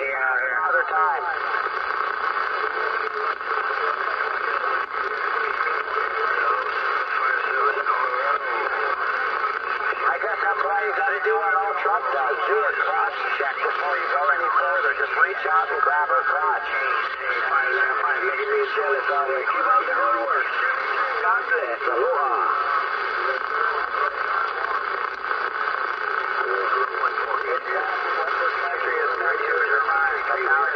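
Distant stations' voices received on a Uniden Bearcat 980SSB CB radio tuned to channel 38 lower sideband (27.385 MHz), coming through its speaker thin and band-limited, with several voices overlapping over steady static.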